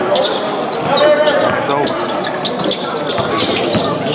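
A basketball bouncing on a hardwood gym court, with repeated sharp bounces and court noise from play, over the voices of players and spectators.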